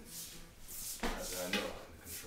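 Clothing rustle and shoes shuffling on a wooden floor as two people work a close-range hand drill. A short murmured voice comes in about halfway through.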